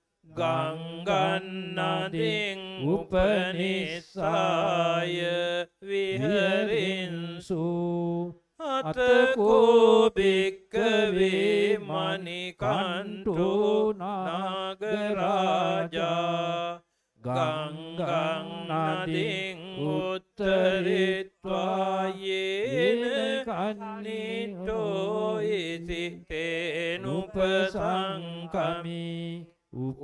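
Buddhist monks chanting Pali scripture into microphones: a steady recitation held on a near-level pitch, broken every few seconds by short pauses for breath.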